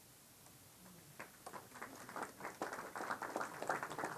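Audience applause starting about a second in, growing from a few scattered claps into steady, dense clapping.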